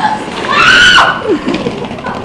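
A person's loud, high-pitched yell, about half a second long, rising and then falling in pitch, followed by a few lower, shorter falling calls.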